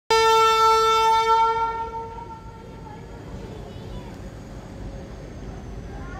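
WAG 12B electric freight locomotive's horn sounding one steady blast of about two seconds that then fades away. A low steady background with faint voices follows.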